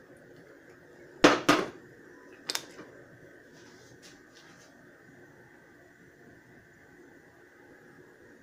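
Kitchen clatter from a vinegar bottle and cooking pot: two sharp knocks close together about a second in, then a lighter click a second later. After that only a faint steady background noise remains.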